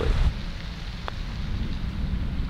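Wind rumbling on the microphone, with a single light, sharp click about a second in: a putter striking a golf ball.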